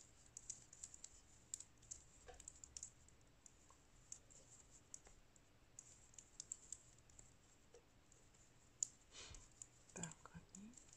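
Faint, irregular clicking of metal circular knitting needles tapping together as knit stitches are worked one after another, with a slightly louder click near the end.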